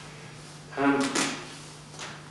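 A man's short spoken 'um' about a second in, followed at once by a brief sharp hissy noise. A steady low hum runs underneath.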